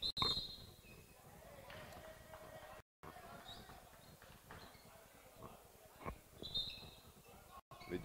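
Quiet indoor handball game sound: scattered calls from players, a few brief high squeaks and sharp knocks from play on the hall floor.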